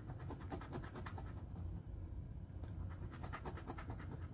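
A coin scratching the coating off a paper scratch-off lottery ticket in quick back-and-forth strokes, in two runs: one about a second in and a longer one near the end.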